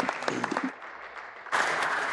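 A chamber of legislators applauding: scattered separate claps at first, then the applause swells suddenly and grows louder about one and a half seconds in.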